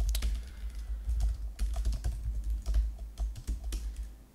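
Typing on a computer keyboard: quick, irregular keystrokes clicking in short runs, over a low steady hum.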